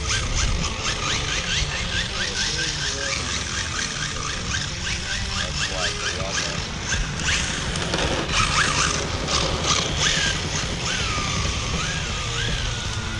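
Electric RC drift car running on asphalt: short rising motor whines come several a second as the throttle is blipped, over tyre scrub, with a few longer rise-and-fall whines near the end.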